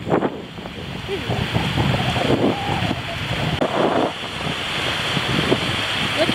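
Wind buffeting the microphone, over small waves washing in shallow water.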